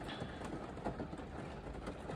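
Faint steady background noise with a few soft ticks, and no clear single source.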